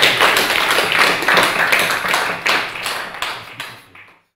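Audience applauding: many hands clapping in a dense patter that dies away near the end.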